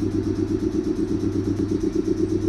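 A 719 series electric train standing at the platform, its underfloor machinery running with a steady hum that pulses rapidly and evenly.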